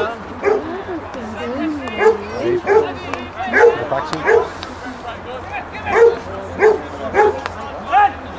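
A dog barking repeatedly, mostly in pairs of short barks, with voices talking underneath.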